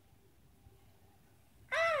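A faint low hum, then near the end a high puppet voice on a TV show exclaims "Alright!" with a swooping rise and fall in pitch. It is heard through computer speakers.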